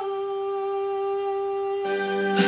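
A woman humming one long, steady note. Near the end, instrumental music comes in under it.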